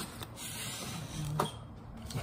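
Foam takeout box being handled close to the microphone: a scraping rustle lasting about a second, then a brief low sound.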